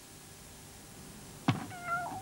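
After near quiet, a cat flap clacks about one and a half seconds in as a cat pushes through it. A short, level-pitched meow follows.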